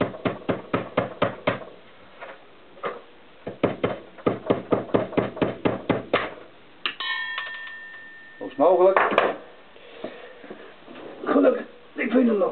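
Small hammer tapping a fitting onto a steel-braided brake hose held in a bench vise: two runs of quick light metal taps, about six a second, driving the fitting home. A short metallic ringing follows near the middle.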